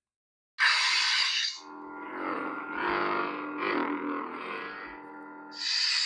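Electronic lightsaber sound effects from a Proffie sound board through a 28mm speaker. About half a second in there is a loud, sudden noisy burst, then a sustained multi-tone hum, then another burst near the end.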